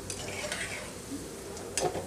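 Gulab jamun dough balls deep-frying in oil on a low flame, a steady sizzle, with a metal ladle stirring them and a short clink against the pan near the end.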